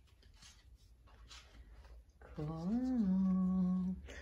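A woman's voice gives one long, drawn-out "Oh" about two seconds in. Its pitch rises and falls, then it is held level to the end. Before it there are only a few faint, soft rustles.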